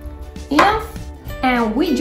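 A woman speaking over background music; her voice begins about halfway through.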